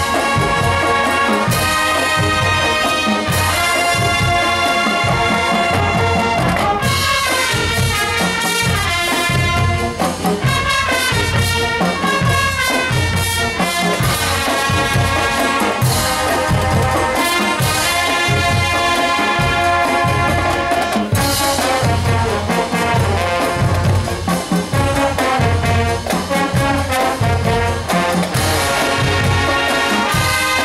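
Marching band playing: a full brass section of trumpets and trombones carrying the tune over a drumline keeping a steady beat.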